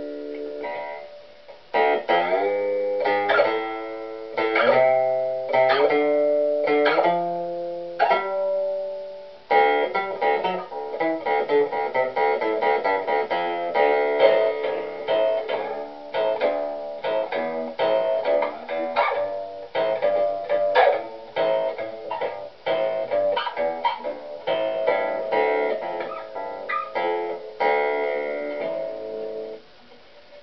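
Homemade two-string cigar box bass guitar with a piezo pickup, plucked: a slow line of single notes at first, then after a brief drop about nine seconds in, a busier run of quicker plucked notes.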